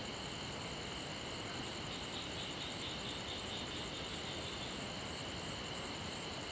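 Night insects chirping steadily: a continuous high trill with evenly repeating pulses. A second, pulsing trill joins about two seconds in and fades out past the middle.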